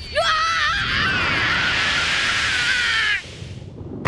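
An anime character's long, wavering scream over a rushing noise, cutting off about three seconds in.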